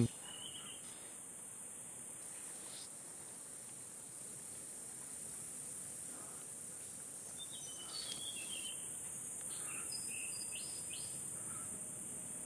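Quiet forest ambience: a steady high-pitched insect drone, with a few faint short chirps about two thirds of the way in and again near the end.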